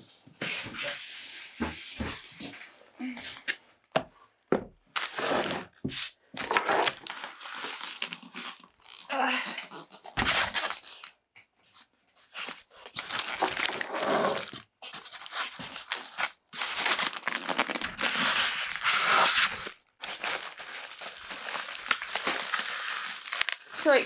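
A photo printer is pulled from its box: plastic wrap crinkling and rustling, and white foam packing blocks rubbing and scraping, in irregular bursts with a few knocks.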